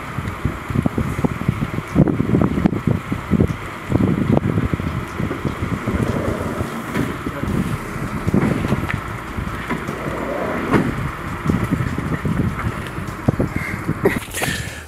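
Wind buffeting an outdoor microphone: an irregular low rumble that gusts up and down.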